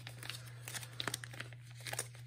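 Clear plastic binder sleeves crinkling as a photocard is pushed into a pocket page: soft, irregular rustles with small clicks.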